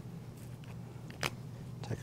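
A single sharp click a little past halfway, a plastic flip-off cap being popped off a blood culture bottle, over a low steady hum.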